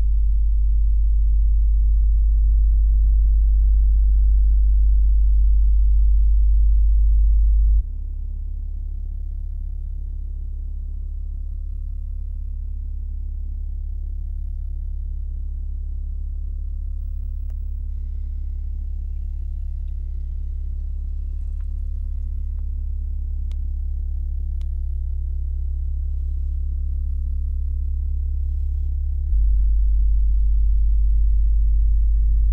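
A deep, steady electronic hum or drone, a low tone with little above it. It steps down in level about eight seconds in and comes back up just before the end. A few faint clicks sound in the middle.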